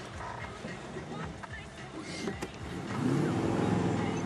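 Range Rover Classic's V8 engine running, heard from inside the cabin while crawling down a rough sandy track, getting louder about three seconds in as it takes load. A few short knocks and clicks from the body and fittings jolting over the ruts.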